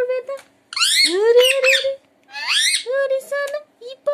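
Rose-ringed parakeet calling: loud calls that sweep up in pitch and then hold, two longer ones followed by several short ones near the end.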